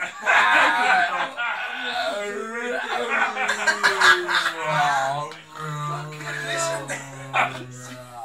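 A man bellowing into the neck of a plastic Coca-Cola bottle to imitate a red deer stag's rutting roar. After laughter in the first half, it becomes a long, low, steady groan through the second half.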